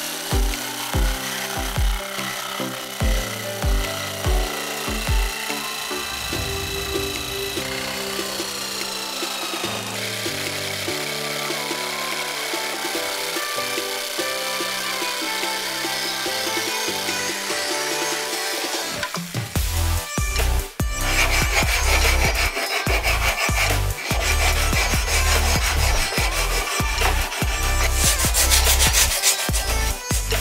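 Electric jigsaw cutting through a thick walnut laminated board, mixed under background music. About twenty seconds in, the music grows louder with a heavy beat.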